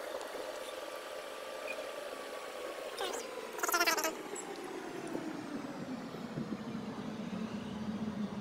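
A vehicle engine's steady hum, its pitch falling slowly through the second half. A short voice-like sound breaks in about three and a half seconds in.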